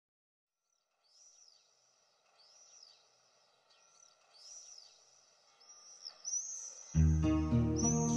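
A bird's short chirping calls, repeating about once a second and growing louder, then music starts abruptly near the end.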